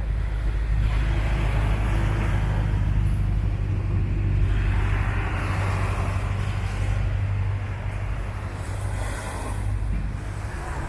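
Small waves washing onto a sandy shore, swelling about a second in and again around five seconds in, over a heavy low rumble of wind on the microphone.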